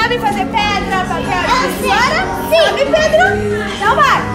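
Children's lively voices and a woman talking to them, over background music.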